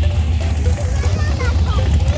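A drag-racing car's engine running at low speed with a steady, deep rumble, with spectators talking nearby.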